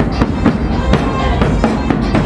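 Large drums beaten hard in a fast, steady rhythm, about four strikes a second, over live band music.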